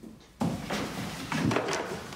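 Wooden pieces handled and knocked about on a workbench: a sudden clatter of short knocks and rattles starting about half a second in.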